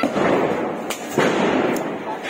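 Firecrackers going off in the street: a run of sharp bangs and pops, the loudest a little after a second in.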